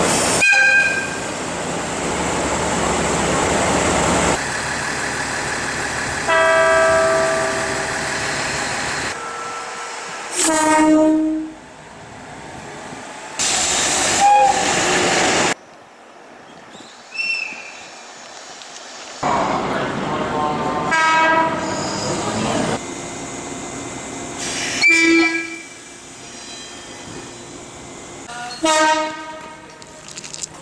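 A run of Japanese train horns cut one after another, about seven blasts. It starts with a short high toot from a DE10 diesel locomotive, then follows with longer chord-like blasts and short toots from other trains, with engine and rail noise between them.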